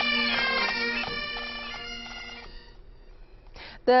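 Pipe band bagpipes playing a tune over their steady drone, fading out over the second and third seconds.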